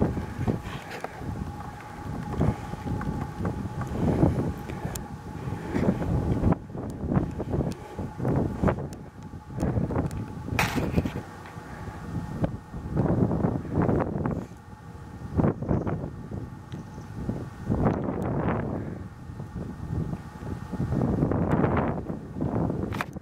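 Wind buffeting the microphone: a low rumbling noise that swells and fades in uneven gusts every second or two.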